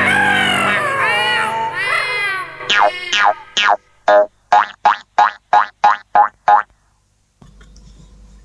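Closing bars of a children's song, then a cartoon 'boing' sound effect for a bouncing ball, repeated about ten times in quick succession. Each boing is a short falling glide, and the series stops abruptly.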